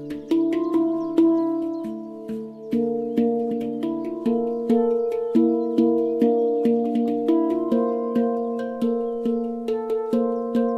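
Handpan played with the hands: struck steel notes ringing out and overlapping in a slow, steady melody, roughly one to two notes a second, each fading away.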